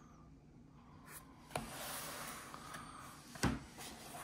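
Cardboard toy packaging being handled: a click, about two seconds of rubbing and sliding, then a thump as a box is set down on a wooden table.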